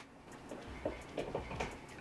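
A string of faint, irregular plastic clicks and taps as fingers work at the snap-shut lid of a small plastic eyeshadow pot until it comes open.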